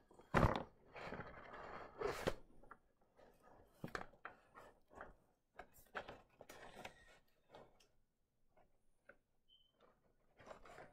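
Handling noise from the camera being turned around and repositioned: a sharp knock about half a second in, a rustling scrape, then scattered knocks and clicks that thin out near the end.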